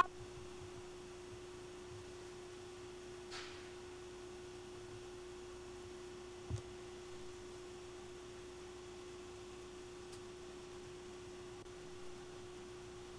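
A single steady electronic tone at one unchanging pitch, faint, like a sine test tone, over a low hiss. A brief low thump comes about six and a half seconds in.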